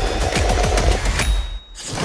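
An old camper's engine being started and gunned, a rapid run of sharp pops at about ten a second over a low rumble, cutting out briefly near the end.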